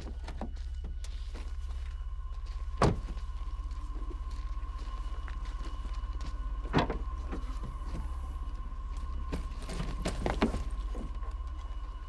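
A car's trunk being unlocked and handled: sharp latch and lid knocks at about 3 and 7 seconds, with a few lighter clunks near the end. Under them run a steady low hum and a thin, steady high tone.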